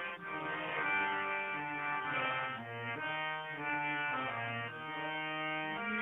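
Harmonium playing a slow melody of held notes, one pitch giving way to the next every half second or so.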